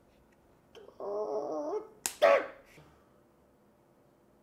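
A person making wordless vocal sounds: a short wavering squeal, then a sharp click and a brief loud yelp right after it.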